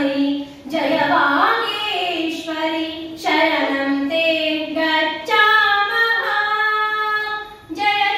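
A high female voice singing an unaccompanied melody in long held notes, with short pauses for breath about half a second in and near the end.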